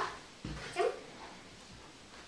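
A baby makes a brief little vocal sound while taking food from a spoon, just after a soft knock.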